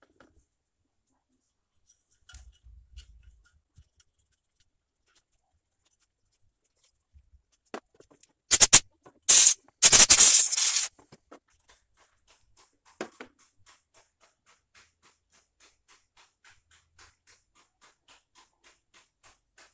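A brush scrubbing accumulated dirt out of the inside of an opened clothes iron: a few short, hissy scrubbing strokes about halfway through, the loudest sounds here, with faint knocks before them and faint rapid ticking after.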